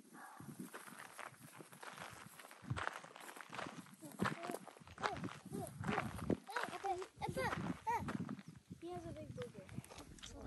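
Indistinct high-pitched voices calling and talking, with footsteps crunching on a dirt trail.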